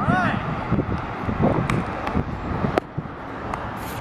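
A voice and laughter outdoors over a noisy background, with two brief sharp knocks about a second apart near the middle.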